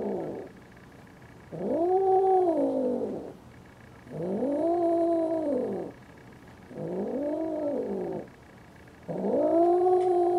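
Siamese cats mating, with a run of long, drawn-out yowls. Each yowl lasts about a second and a half to two seconds and rises then falls in pitch. A new one begins roughly every two and a half seconds: one ends about half a second in, four more follow, and the last runs on past the end.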